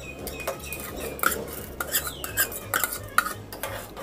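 Metal spoon stirring a watery grain mixture in a metal pot, clinking and scraping against the pot's sides in irregular taps, with one short squeak about halfway through.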